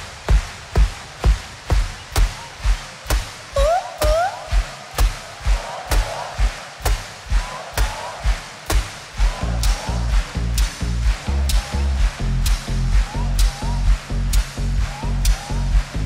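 Live pop music: a steady dance beat about twice a second, with short rising slides on the acoustic guitar a few seconds in. A deep bass line joins about nine seconds in.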